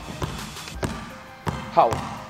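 Basketball dribbled hard on a hardwood court floor in a crossover drill: about four sharp bounces roughly two-thirds of a second apart, each with a short ringing echo of the hall.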